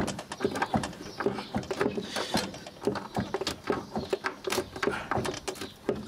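Irregular clicks and knocks of plastic and metal parts being handled and fitted on a vintage record player.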